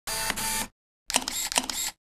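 Camera shutter sounds in two short bursts about half a second apart. The second burst has several sharp clicks in quick succession.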